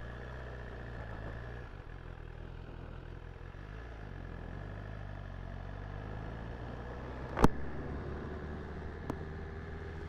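BMW S1000RR inline-four engine running at low revs as the motorcycle pulls away slowly, its note stepping in pitch a few times. There is one sharp click about three-quarters of the way through.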